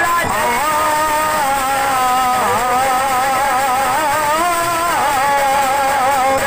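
A man singing a dollina pada (Kannada folk song) into a microphone, drawing out long wavering notes with pitch dips.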